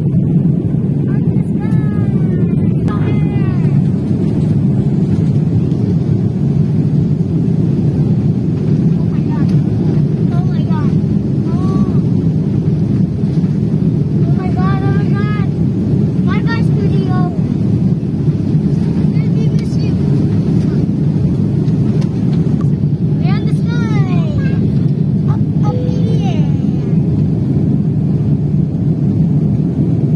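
Steady, loud roar of an airliner's engines and airflow heard inside the passenger cabin during the climb after takeoff.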